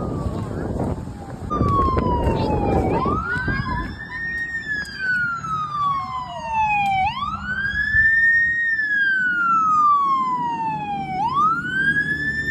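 Fire engine siren wailing, starting about a second and a half in. It rises quickly in pitch, then falls slowly, repeating about every four seconds. A low rushing noise fills the first three seconds.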